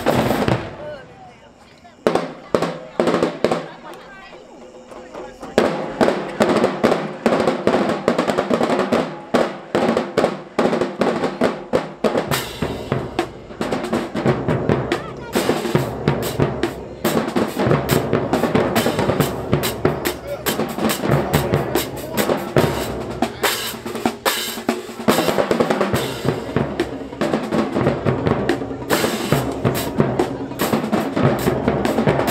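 Marching band drumline: playing cuts off just after the start, a single hit falls in a quieter gap, then snare drums, bass drums and cymbals start a fast, loud cadence about five seconds in and keep it going.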